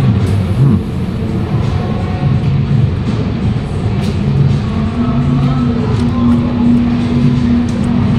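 Low, steady rumble of a busy indoor station concourse, with background music. A sustained low tone comes in about five seconds in.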